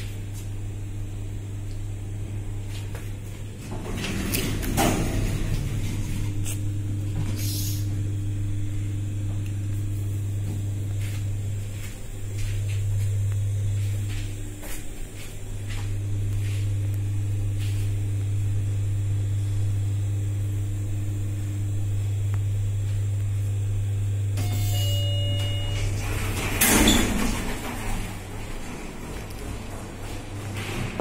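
Schindler elevator in service: the doors slide shut about four seconds in, then the car travels with a steady low drive hum. Near the end a short electronic tone sounds and the doors slide open.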